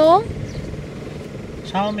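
A car engine idling, heard as a low steady rumble from inside the cabin. A woman's call ends just after the start, and a child's voice comes in near the end.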